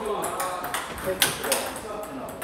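Table tennis ball being struck back and forth, with a few sharp clicks of the celluloid-type ball off the paddles and table, the loudest three in the second half.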